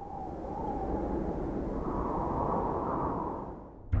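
A low, noisy sound effect with no clear pitch that fades in, holds steady and fades out just before the end.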